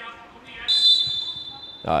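Referee's whistle: one steady, high-pitched blast a little over a second long, starting under a second in, calling a foul throw-in.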